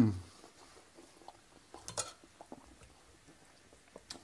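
The tail of an appreciative hummed 'mmm', falling in pitch. Then faint clicks and soft taps from cooked pheasant meat being pulled apart and cut on a wooden chopping board, with a small cluster of sharper ticks about two seconds in.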